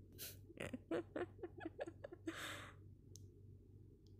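A woman laughing softly into the microphone in a run of short breathy bursts, with a quick breath near the start and a longer breathy exhale about two and a half seconds in.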